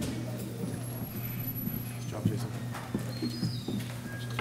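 Quiet auditorium background: faint murmuring voices from the seated audience over a steady low hum, with a few soft knocks.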